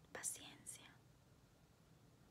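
A woman's soft whisper in the first second, then near silence.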